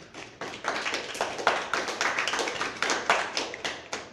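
Small audience applauding, with individual claps heard distinctly, thinning out near the end.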